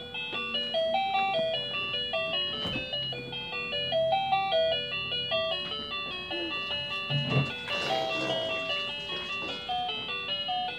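Electronic tune from a baby walker's toy tray: a quick melody of short, plinky beeping notes, like an ice-cream-van chime, with a brief burst of noise about seven seconds in.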